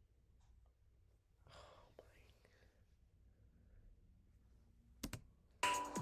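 Very quiet room with a faint breathy sound about a second and a half in, then two sharp clicks about five seconds in. Just before the end, the reacted-to video's music and a woman's voice start up loudly.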